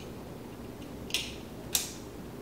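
Two sharp plastic clicks about half a second apart: a tool-less green plastic side bracket snapping into place on a 3.5-inch hard drive in a NAS drive tray.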